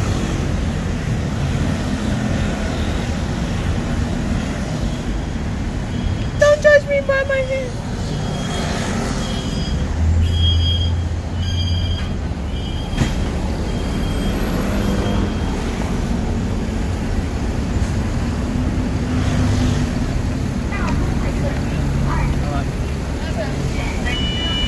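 Steady city road traffic: a continuous rumble of passing cars and buses. A brief falling squeal comes about seven seconds in, a heavier low rumble swells for a couple of seconds around ten seconds in, and short high tones sound on and off through the middle.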